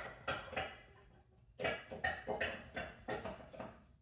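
Several faint, light clicks and clinks spread over a few seconds as bare feet step onto and settle on a glass digital bathroom scale.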